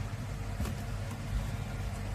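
A steady low machine hum with a faint tap about two-thirds of a second in.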